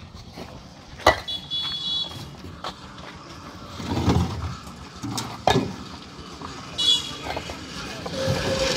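Fired clay bricks clacking against one another as they are stacked by hand, a handful of sharp separate knocks. A passing vehicle swells up about halfway through, and a short high-pitched toot sounds about a second in and again near the end.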